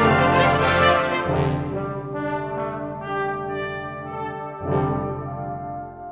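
Brass band playing: loud, full accented chords for the first second and a half, then the sound thins out to softer held notes, swells once more near the end and dies away.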